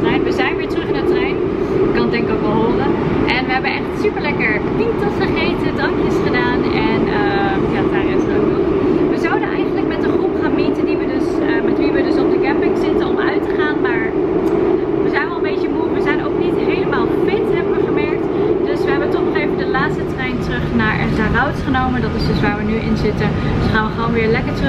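Train running, heard from inside the carriage: a steady low rumble under a woman talking.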